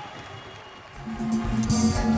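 Music, quiet at first, then louder about a second in as a full band sound with a strong bass line comes in.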